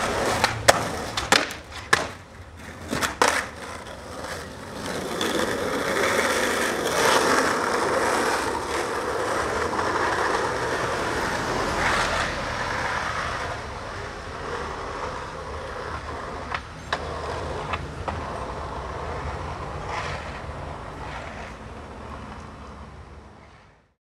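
Skateboard wheels rolling on street asphalt, a steady roll that swells and then slowly fades away. Several sharp knocks come in the first few seconds.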